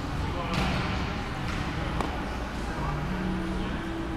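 A volleyball strikes the hard gym floor once with a sharp smack about two seconds in, over indistinct voices in the hall.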